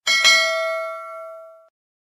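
Notification-bell sound effect from a subscribe-button animation: a bell struck twice in quick succession, then ringing and fading out over about a second and a half.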